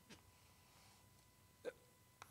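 Near silence: room tone, with a faint click at the start and one short sound near the end.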